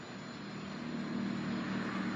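A motor vehicle passing outdoors: a steady low engine hum that grows slowly louder.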